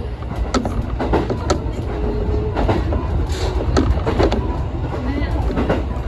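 Electric train running along the line: a steady low rumble from the wheels and running gear, with irregular sharp clicks of the wheels passing over rail joints.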